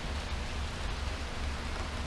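Steady background hiss with a low rumble underneath and no distinct event.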